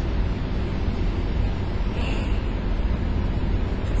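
Steady background noise with a low rumble and an even hiss, unbroken through the pause in speech.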